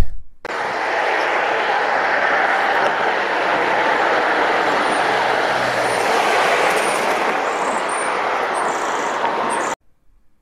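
Steady road traffic and street noise. It starts just after the opening and cuts off suddenly near the end.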